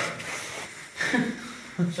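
A man laughing softly and breathing, with a short spoken word near the end.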